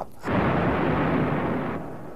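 An aircraft blowing up in the air: one explosion, a dense burst of noise that starts about a quarter second in and fades away over about a second and a half.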